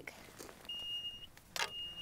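An electronic device beeping twice with a high, steady tone, each beep about half a second long, with a short rustle of handling as the second beep begins.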